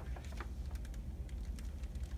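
Pages of a hardcover picture book being turned and handled: a scatter of small, faint paper clicks and rustles over a low steady hum.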